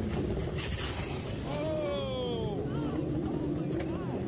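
Open-wheel race car engines running at speed on the circuit. One car passes about halfway through, its engine note falling in pitch as it goes by, over a steady bed of engine noise.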